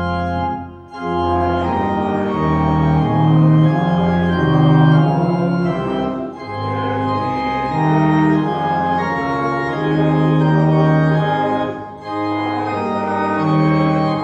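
Church organ playing a hymn in held, sustained chords, with short breaks between phrases about a second in, about six seconds in and about twelve seconds in.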